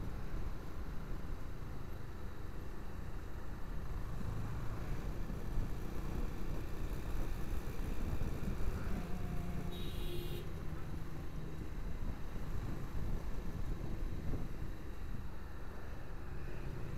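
Motorcycle riding through town traffic: steady low engine, road and wind noise on the bike-mounted camera's microphone, with a brief high hiss about ten seconds in.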